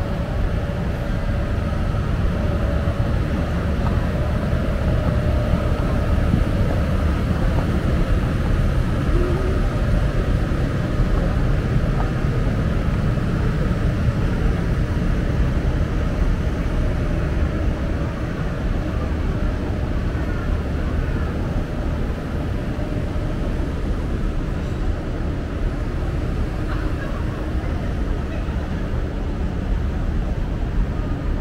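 Steady low rumble of city ambience: a constant hum of distant traffic and machinery, with no distinct events standing out.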